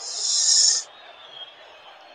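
A short high hiss into a microphone, under a second long, then only faint background hiss.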